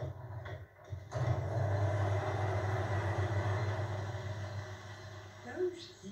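Wool ball-winding machine starting up about a second in and running with a steady mechanical hum, its sound slowly fading toward the end. Heard through a television's speaker.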